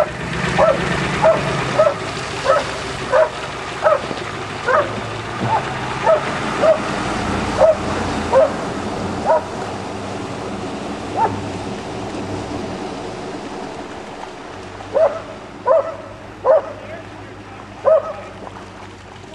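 A dog barking over and over, about one bark every two-thirds of a second for the first nine seconds, then a few more barks near the end, over a steady rushing noise.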